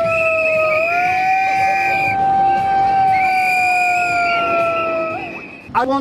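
Protest noisemakers: a long, steady horn-like tone that sags slightly in pitch and then recovers, with a higher shrill whistle over it. Both stop about five seconds in.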